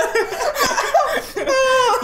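A woman laughing in conversation, mixed with a few words of speech.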